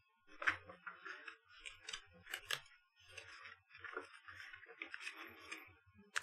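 Faint rustling and crinkling of paper as the pages of a printed manual are handled and turned, with a few sharper crackles in the first half.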